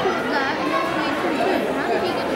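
Many voices talking at once in a large hall: the steady hubbub of a crowd of spectators, with no single voice standing out.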